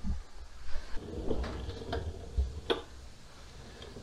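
A few light clicks and knocks, spread out, over a faint low rumble: handling noise as things are moved about.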